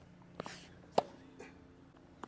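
A tennis racket striking a ball on a one-handed backhand: one sharp pop about a second in, with fainter taps before and after it. The coach calls the shot a slap, from extra wrist movement at contact.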